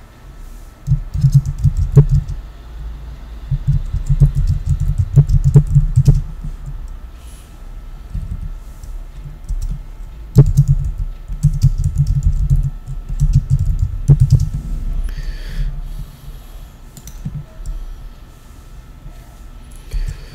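Computer keyboard typing in two runs of keystrokes, the first about a second in and the second about ten seconds in, with a pause between them.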